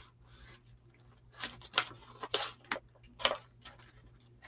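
Paper sticker sheets being rummaged through: several short, faint rustles and scrapes, most of them in the second half.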